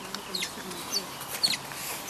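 Asian small-clawed otter giving a quick series of short, high-pitched chirping squeaks.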